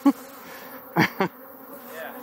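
Honey bees buzzing around the opened hives, a steady hum. A man's short laugh at the start and two brief voice sounds about a second in.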